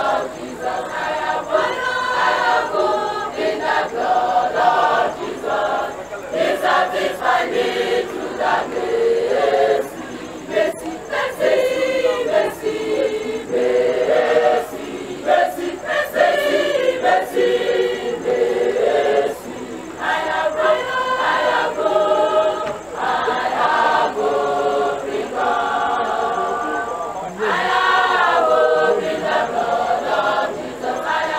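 A large choir of young voices singing together, phrase after phrase, with brief breaks between phrases.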